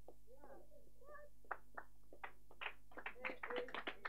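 Scattered hand claps begin about one and a half seconds in and thicken into quiet applause toward the end, over faint distant voices.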